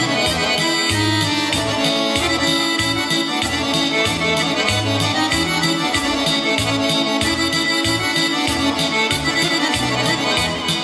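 Instrumental intro of a Balkan folk song played live on an arranger keyboard: an accordion-voiced lead melody over a steady bass and drum beat.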